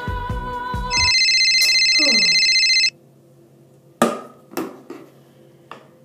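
Soul/R&B-style music with singing cut off about a second in by a loud electronic phone ringtone that sounds steadily for about two seconds, with a short falling voice under it. Then a few sharp knocks, as of the phone being handled, in a quiet small room.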